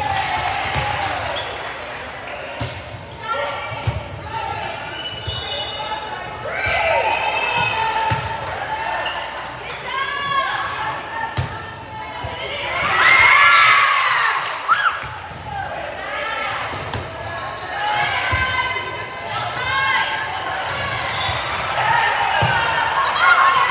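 Volleyball rally in a gymnasium: sharp thuds of the ball being hit and landing, with girls' voices calling and shouting across the echoing hall. A loud burst of shouting comes about 13 seconds in.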